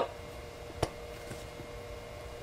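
Quiet room tone with a faint steady hum and one short, sharp click a little under a second in.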